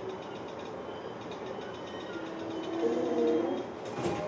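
Sotetsu 12000 series electric train running, heard from the cab: a steady rumble of wheels and running gear on the rails. About halfway through, a short whining tone rises and lasts a second or so as the train comes in to its stop.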